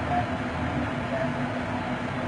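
Steady mechanical running noise with a constant low hum.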